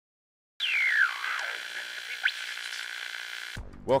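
Short synthesized intro sting that starts suddenly with a steeply falling sweep, has a quick rising sweep in the middle, and cuts off abruptly near the end, where a man's voice begins.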